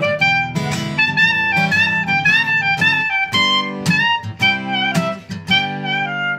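Clarinet playing a melody of quick, stepping notes over a strummed acoustic guitar, in the instrumental ending of a folk song after the last sung line.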